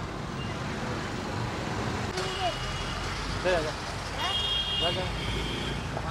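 Steady street traffic noise with indistinct voices in the background. A high, steady tone sounds twice: briefly about two seconds in, and again for about a second after the four-second mark.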